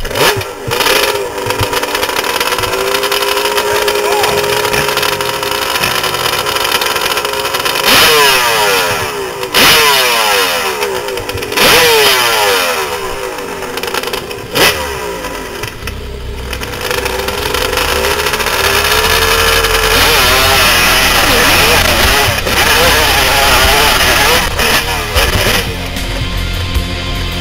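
Kawasaki 750 two-stroke triple hillclimb bike, heard from the rider's helmet: running at the start line with several sharp blips of the throttle, then held on the throttle from about two-thirds of the way in as it launches and climbs the hill.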